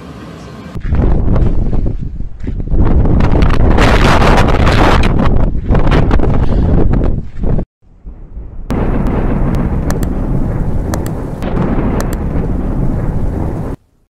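Blizzard wind buffeting a phone microphone: gusts of loud rushing noise that rise about a second in and cut off suddenly. After about a second of silence comes a steady storm rumble with a few sharp clicks.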